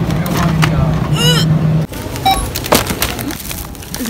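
Steady low hum of store freezers, with a brief high-pitched vocal sound about a second in. The hum cuts off suddenly just under two seconds in, giving way to outdoor parking-lot noise with a single sharp click.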